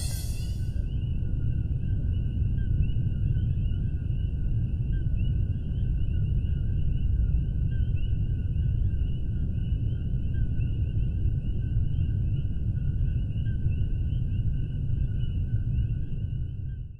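Steady deep roar of a Kilauea fissure vent's lava fountain, with two faint, steady high tones held above it.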